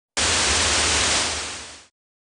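A burst of static hiss that starts suddenly, holds steady for about a second, then fades out, like a TV-static sound effect.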